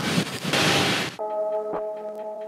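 Airliner cabin noise, a steady rush that swells brighter for about half a second and then cuts off abruptly a little over a second in. Background music takes over: a sustained electronic chord.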